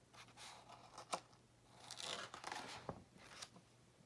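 A page of a hardcover picture book being turned by hand: a faint rustle and swish of the paper, with a few light clicks.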